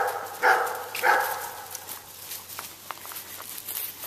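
A dog barks three times, about half a second apart, in the first second and a half. After that there are only faint scattered clicks and rustles.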